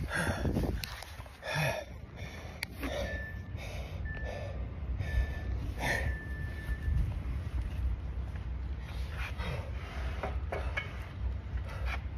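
A man breathing hard and gasping, winded from a long set of pull-ups, with a run of heavy breaths. A thin high whistle-like tone sounds on and off in the middle.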